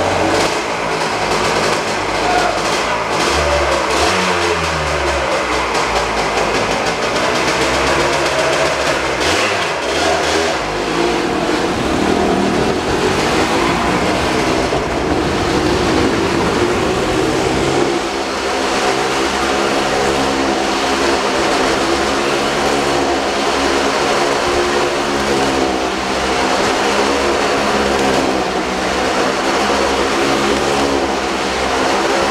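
Harley-Davidson motorcycle riding round the wooden wall of a Wall of Death drome, its engine revving, the pitch rising and falling as it circles through the first half and then holding steadier.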